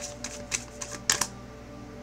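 A deck of tarot cards being shuffled by hand: a quick run of card clicks and slaps during the first second or so, stopping about a second and a quarter in.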